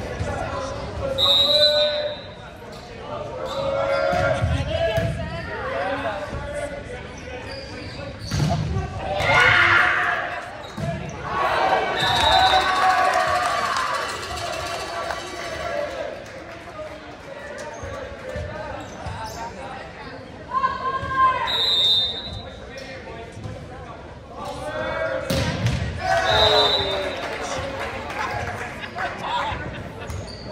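Indoor volleyball rally: the ball being struck and bouncing on the hardwood gym floor, with players and spectators shouting in the echoing hall. Several short, shrill high tones cut through at intervals.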